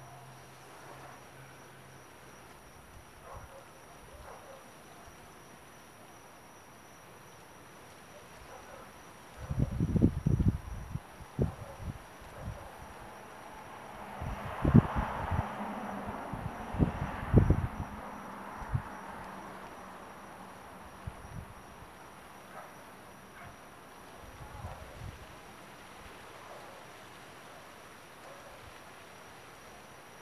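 Handling noise from a camera on a zoom lens: a cluster of knocks and bumps about a third of the way in, then a soft rustle with more knocks around halfway. Behind it lies a quiet night background with a faint steady high insect-like tone.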